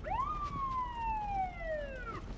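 Police car siren giving one wail: its pitch jumps up quickly, then falls slowly and steadily over about two seconds.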